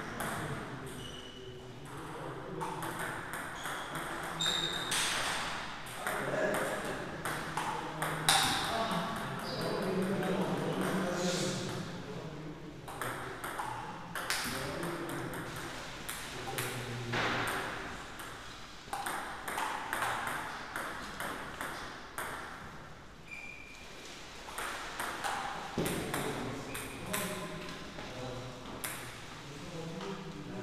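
Table tennis rallies: a celluloid ball clicking off rackets and bouncing on the table in quick exchanges, with pauses between points.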